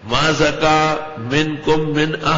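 A man chanting Quranic verses in Arabic in a melodic recitation style, holding long steady notes with slow rises and falls in pitch and a brief pause for breath about a second in.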